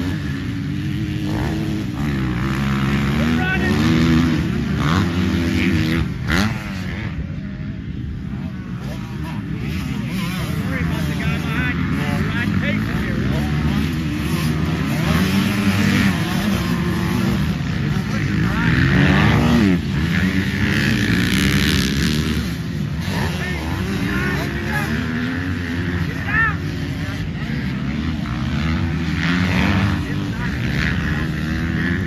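Motocross dirt bike engines revving up and down through the gears as the bikes ride past, the pitch rising and falling again and again.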